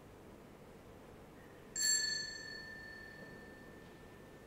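A small bell struck once, a little under two seconds in, its clear high ring fading over about two seconds: the sacristy bell marking the start of the service.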